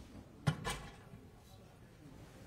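Two quick knocks about a fifth of a second apart, about half a second in, over low room sound.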